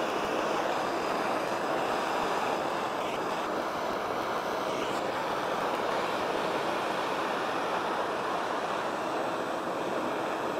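Hand-held gas torch burning with a steady rushing noise. It is playing a blue flame on a steel part to heat it until solder melts around brass pins.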